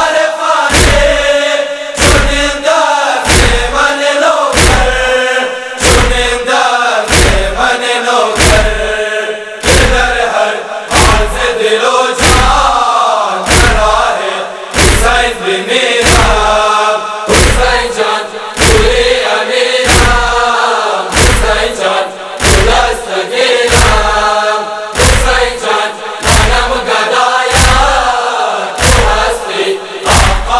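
Noha, a Shia lamentation chant, sung over a heavy, evenly spaced thumping beat that falls a little more than once a second.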